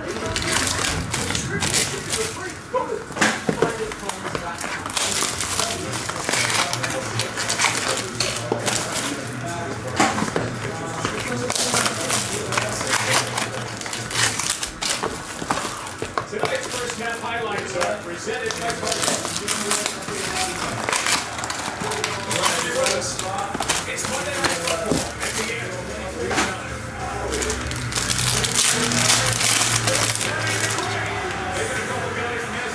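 Plastic and foil wrapping of trading-card boxes and packs crinkling and tearing over and over as they are unwrapped by hand, with music and voices playing underneath.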